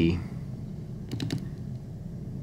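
A quick run of three or four small mechanical clicks about a second in: the Olympus PEN-F's metal front creative dial turning through its detents.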